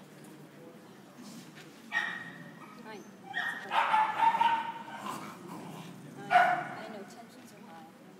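A dog barking and yipping in short pitched bursts: once about two seconds in, a longer run of yelps in the middle, and one sharp bark near the end.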